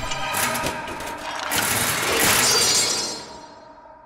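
Cartoon sound effect of a metal suit of armour crashing to a stone floor: a long run of metallic clatter and bangs, loudest near the middle, dying away in a ringing tail near the end.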